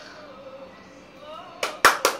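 Quiet at first, then a quick run of sharp hand claps begins about one and a half seconds in: a woman clapping in praise.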